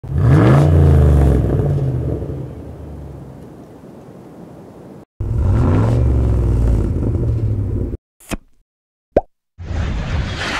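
A car engine revving hard, its pitch climbing over about half a second and then holding before fading away. The rev is heard twice, with an abrupt cut between them. Near the end come two brief sharp sounds, and then music starts.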